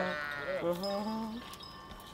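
Sheep bleating: a held baa trails off at the very start, then a second baa from about half a second in to about a second and a half rises slightly in pitch.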